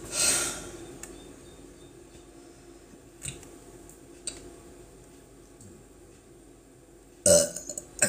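A woman gulping in air with a sharp inhale to force a burp. A quiet stretch with a couple of faint clicks follows, and near the end comes a brief, loud throat sound as she tries to bring the air back up, though it won't come out.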